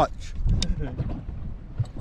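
Wind rumbling on the microphone in a small open boat at sea, with a faint voice briefly about half a second in and a few light clicks.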